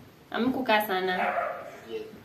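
A man laughing loudly, one drawn-out laugh starting about half a second in and lasting about a second and a half.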